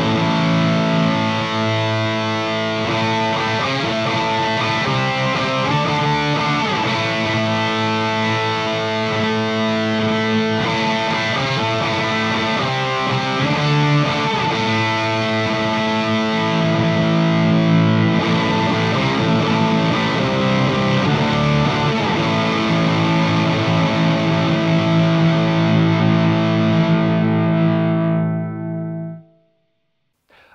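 Distorted electric guitar played through a Blackstar ID:Core Stereo 150 amp with its octaver effect on, sustained notes and riffs. The playing stops quickly near the end.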